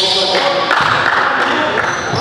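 Music track playing over the edited footage, with held chords that change every half second or so.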